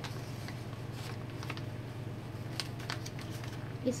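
A sheet of paper being folded and creased by hand, with a few faint crinkles and rustles, over a steady low background hum.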